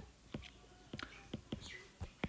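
Soft clicks and taps of a stylus on a tablet's glass screen as a word is handwritten, a few irregular ticks spread through, with a faint breathy sound near the end.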